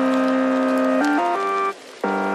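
Background music: a held chord, then a few quick changes of note about a second in, and a short drop-out near the end.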